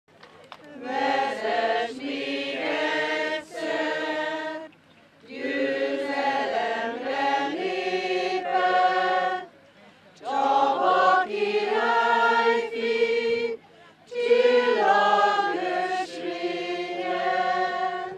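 A group of people singing together outdoors, in long held notes over four phrases with short breaths between them.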